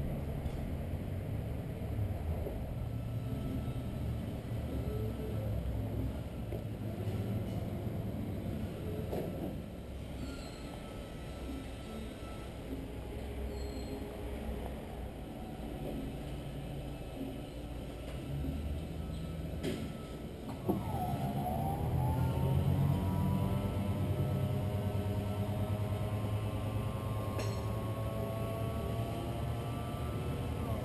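The power convertible top of a 1964 Ford Galaxie XL running: about two-thirds of the way in, its electric-hydraulic pump motor starts with a jolt, then whines steadily, rising slowly in pitch as the top lifts. Before that there is only a low, steady rumble.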